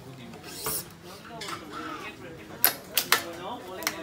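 Sharp clicks and snaps from a badminton racket being strung on a stringing machine as the clamps and taut string are worked, four in the second half, with voices talking in the background.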